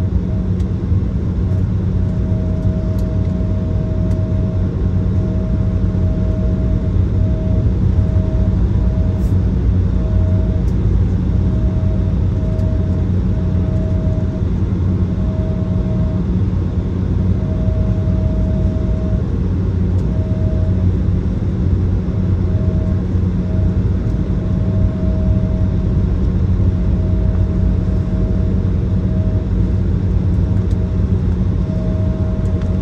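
Cabin noise of an Embraer 170 taxiing: its GE CF34-8E turbofan engines running at idle as a steady low drone. A thin tone sits above the drone, repeatedly dropping out and coming back.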